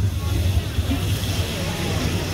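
Canned whole peeled tomatoes hitting hot oil in a stockpot, setting off a steady sizzle over a low rumble.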